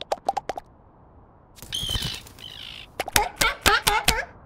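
Cartoon sound effects: a quick run of short pitched pops like rapid pecking that stops about half a second in. A squeaky, wavering chirp follows about a second and a half in, then a string of short chirps that each drop in pitch near the end.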